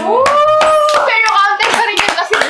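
Several people clapping their hands in quick, uneven claps, with a high voice rising into a long held whoop during the first second.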